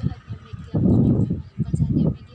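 Women's voices in casual conversation: speech only, loudest about a second in.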